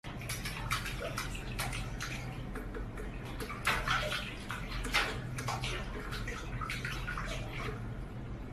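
Water in a stainless-steel kitchen sink splashing and sloshing as a cat paws and scoops at it, with irregular sharp splashes over a steady water noise, a few louder ones in the middle.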